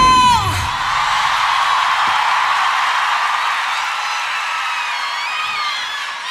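A held sung note ends the song, sliding down in pitch about half a second in as the band stops. A live audience then cheers, with high whoops and screams over the crowd noise.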